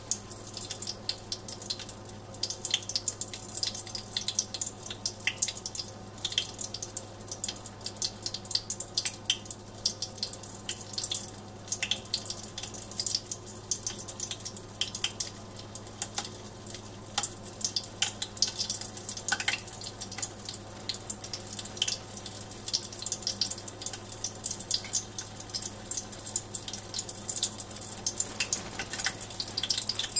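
Continual irregular popping and crackling from hot mineral oil, at about 120 °C, with pieces of laser-sintered nylon in it: moisture boiling out of the nylon, which the experimenter is pretty sure of.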